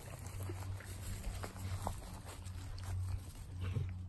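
A puppy moving about on grass, with faint scattered small sounds over a steady low hum.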